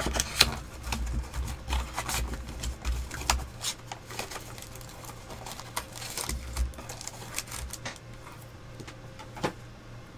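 Cardboard card box and foil trading-card packs being handled and torn open on a tabletop: a quick run of crinkles, tears and light clicks, thickest over the first few seconds and again around six seconds in.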